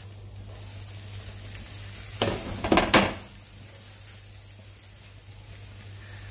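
Diced onion sizzling in hot oil and butter in a frying pan, with a louder stretch of stirring with a spatula about two seconds in that lasts under a second.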